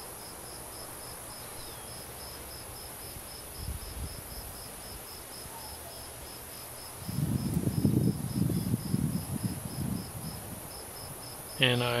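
A cricket chirping in an even, steady rhythm of about five chirps a second. In the second half a low, uneven noise runs for about three seconds.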